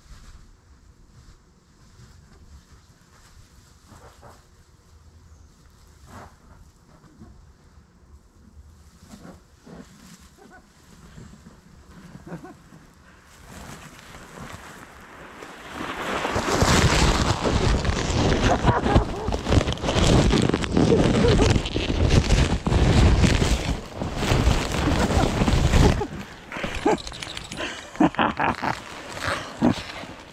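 A sled made of foil-faced bubble-wrap insulation sliding down packed snow, faint at first and building about halfway through. It becomes a long, loud stretch of crinkling foil and scraping snow as it reaches the microphone, then dies away into scattered crackles near the end.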